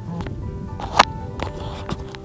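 Background music with steady sustained tones. A single sharp click comes about a second in, with a smaller one near the end.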